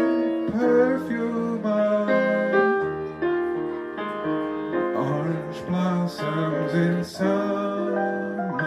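Live jazz piano-and-voice duo: a grand piano plays chords and lines under a male singer whose voice slides between notes, near the close of the song.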